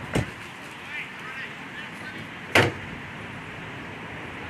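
Two sharp thumps about two and a half seconds apart, the second much louder, over faint distant voices and steady open-air background.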